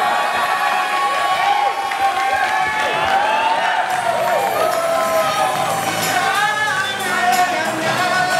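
Pop music playing in a hall while a party crowd cheers and whoops over it, with a cluster of rising-and-falling whoops in the first half.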